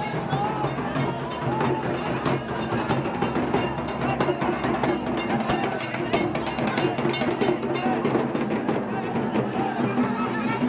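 Fast percussion music, a rapid run of drum strokes, over the voices of a crowd.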